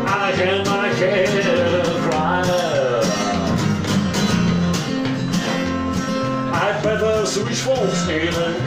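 Acoustic guitar strummed in a steady country rhythm, with a man singing over it through the first few seconds and again near the end.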